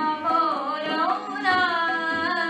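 A woman singing a devotional bhajan in an ornamented melody that glides up and down, over the steady drone of the harmonium she plays.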